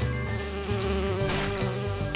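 Cartoon wasp buzzing, a steady drone over background music, with a short burst of hiss about a second and a half in.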